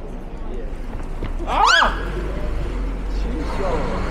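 A short, high-pitched startled cry, its pitch rising then falling, about a second and a half in, the loudest sound here, over the murmur of a busy pedestrian street. A weaker, falling vocal sound follows near the end.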